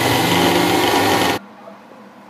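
Electric mixer grinder running at full speed, grinding sugar into powder in its steel jar; it cuts off abruptly about a second and a half in.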